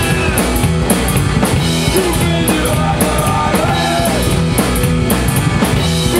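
Rockabilly band playing an instrumental passage: electric guitar with bending notes over an upright double bass and a drum kit with steady cymbal strokes.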